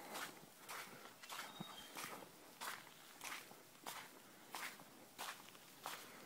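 Faint footsteps of a person walking on a sandy beach at an even pace, about three steps every two seconds, each step a short crunch.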